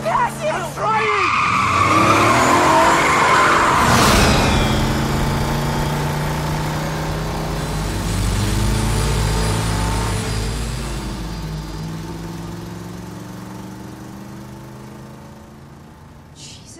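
A big old truck's engine running hard up close as it passes, with a sudden loud burst about four seconds in, then its engine note fading steadily as it pulls away down the road.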